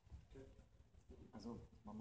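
A person's faint, drawn-out voice, starting about a third of a second in, over quiet room tone.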